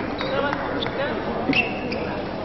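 Table tennis ball clicking off bats and table in a rally, about four sharp hits. A brief high squeak about one and a half seconds in is the loudest moment. Voices murmur throughout.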